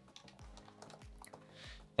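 Light clicks of a computer keyboard being typed on, a short run of quiet keystrokes.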